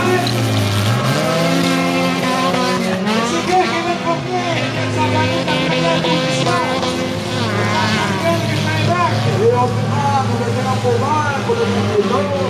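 Several four-cylinder stock cars racing on a dirt oval, their engines revving up and easing off as they slide through the corner, so the pitch rises and falls as the cars overlap.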